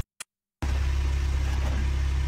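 After a short silent gap with a single small click, a car engine idles with a steady low hum.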